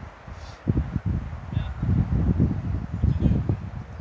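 Wind buffeting the microphone in uneven gusts, a loud low rumble that starts about a second in and dies down near the end.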